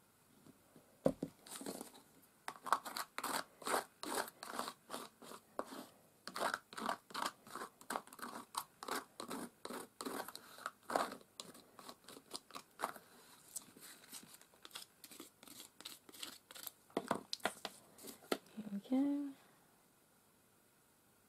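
A single click about a second in, then a palette knife scraping medium across a small textured canvas block in quick repeated strokes, about three to four a second, thinning out in the last third.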